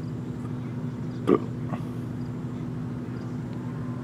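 A short, loud shout from a player on the cricket field about a second in, followed by a fainter call, over a steady low hum.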